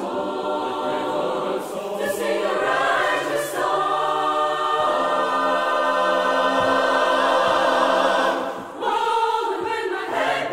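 Unaccompanied mixed choir singing in close gospel harmony: a short sung phrase leads into a long held chord that swells louder. The chord breaks off near the end, and a new phrase starts.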